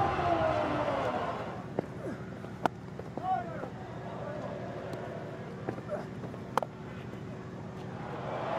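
Cricket stadium crowd noise with scattered shouts from spectators. About six and a half seconds in, a single sharp crack of the bat striking the ball rises above it. There is a smaller knock a few seconds earlier.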